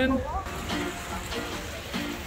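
Fountain water splashing from jets into a pool, with people talking in the background.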